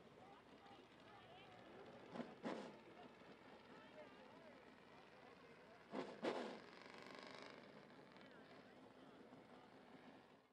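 Near silence with faint, unintelligible distant voices. Short, slightly louder voice sounds come about two seconds in and again about six seconds in.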